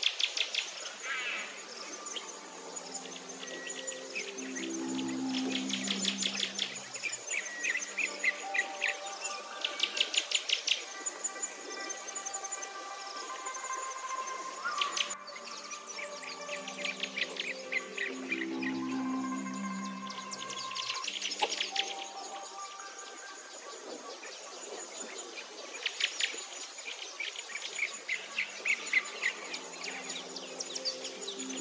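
Background nature-sound track: bursts of rapid bird chirping and a steady pulsing insect trill over soft, sustained music notes, the pattern repeating about every fourteen seconds.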